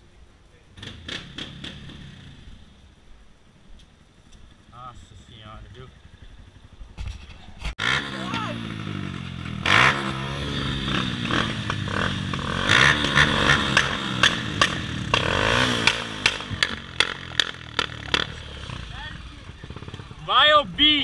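Motorcycle engine running close by, louder from about eight seconds in, its pitch rising and falling as it is revved, with sharp clattery spikes over it; the first part is quieter.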